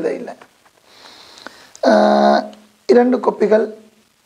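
A man's voice speaking in short, drawn-out phrases, with a faint intake of breath about a second in and a held, level-pitched syllable about two seconds in.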